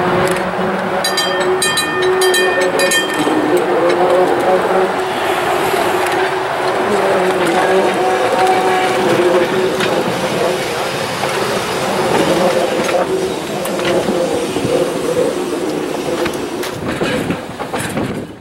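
Muni K-type streetcar 178, a 1923 Bethlehem-built 'iron monster', running along street track: a wavering motor and gear whine over a steady rumble and rattle of wheels on rail. A high ringing tone sounds briefly about a second in.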